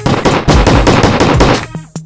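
A burst of rapid machine-gun fire, a sound effect over the music, lasting about a second and a half before fading out.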